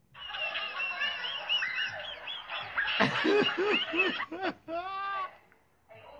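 A person's hard, high-pitched squealing laughter, with a run of lower pitched laughs about three a second in the middle and a drawn-out note near the end.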